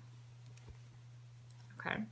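Quiet handling of a single makeup remover wipe as it is unfolded by hand: a couple of faint clicks, one about a third of the way in and a lighter tick later, over a steady low hum. A short spoken 'okay' comes at the end.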